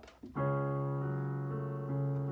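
Digital piano: C-sharp notes in the bass and middle struck together about a third of a second in and left ringing, with a couple of softer notes added near the end.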